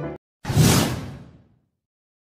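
Background music cuts off, and about half a second later a whoosh transition sound effect with a low boom under it swells up and fades away over about a second.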